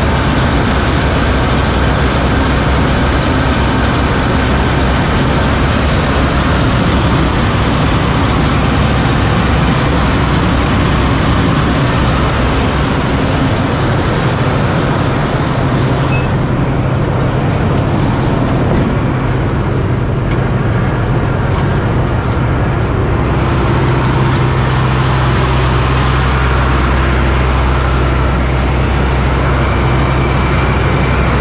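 Combine harvester's diesel engine running steadily with a deep hum, which grows stronger in the last few seconds.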